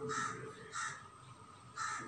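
A bird calling three times in the background: short calls, the first at the start, the second under a second later, the third near the end.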